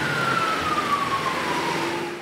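Police car siren wailing, one long tone falling slowly in pitch, over the noise of traffic on the road.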